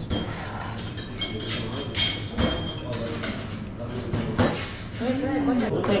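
Glasses and crockery clinking in a busy bar over a murmur of background chatter: several sharp clinks, a couple of them ringing on briefly in the first half.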